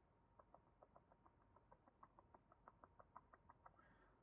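Near silence: room tone with a faint, rapid ticking, about six ticks a second.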